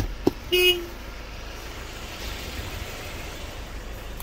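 A single short vehicle horn toot, one steady note about half a second in, just after a couple of sharp knocks. After that comes a steady background noise.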